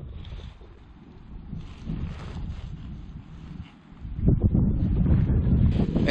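Wind buffeting the microphone outdoors, a low rumbling rush that grows louder over the last two seconds.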